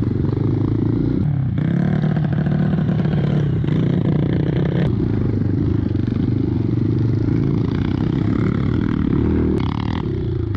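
A dirt bike's engine running under changing throttle, heard from on the bike as it rides a rough forest trail. The pitch drops and climbs again about a second and a half in, with rattling and scraping from the bike over the ground.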